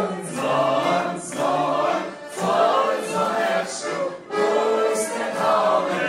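A group of people singing together in chorus, unaccompanied, loud and continuous, as a toast.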